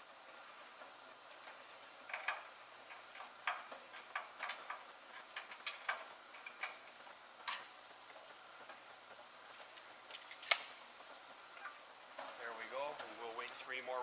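A ratcheting wrench clicks in a run of irregular strokes, with one sharper click near the end, as the conveyor's in-feed pulley take-up bolt is turned to shift the belt's tracking.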